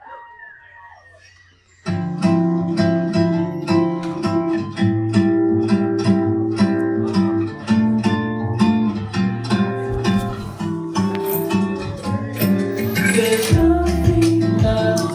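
Recorded backing track played from a laptop through the PA, starting abruptly about two seconds in, with a steady beat and plucked guitar. A voice sings over it into a microphone.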